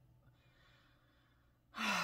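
A woman's audible breath: a faint breath, then a louder sighing breath starting near the end.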